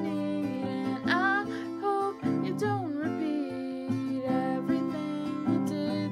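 Acoustic guitar strummed while a woman sings over it without clear words, her voice gliding up about a second in and wavering around three seconds in.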